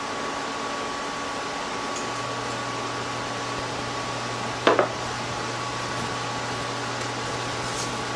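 Steady whirring and hum from a portable countertop electric burner running under a pan of celery and onion cooking in butter. A deeper hum joins about two seconds in, and there is one brief clatter a little past halfway.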